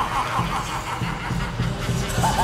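Horror film trailer soundtrack: a deep, steady low rumble, with a man's voice saying a word and laughing briefly over it during the first second.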